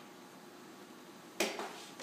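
Quiet room tone, then about one and a half seconds in a single sharp metal clank with a short ringing tail: a wrench being handled at the spindle's air-line fitting.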